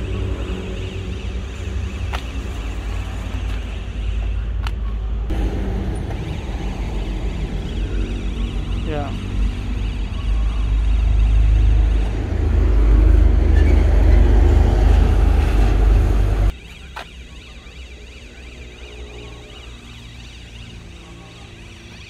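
An engine running steadily with a low rumble, getting louder about ten seconds in, then cutting off suddenly about sixteen seconds in, leaving a much quieter background.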